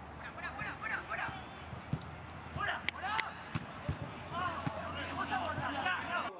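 Live sound from a soccer pitch: players shouting, with a few sharp knocks of a football being kicked.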